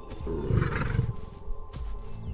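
A lion's low, rough growl lasting about a second, over background music with sustained tones.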